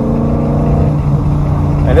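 Ford Mustang GT's 5.0 V8 cruising under light load, a steady exhaust drone heard from inside the cabin, with no pops or crackles.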